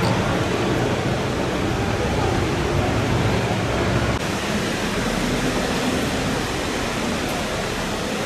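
Steady outdoor background noise: an even rushing hiss with a faint low hum underneath, unchanging throughout.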